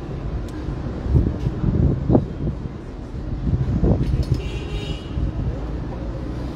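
Outdoor street noise: a steady low rumble of traffic under the murmur of a gathered crowd, with brief raised voices about two and four seconds in and a short high tone a little later.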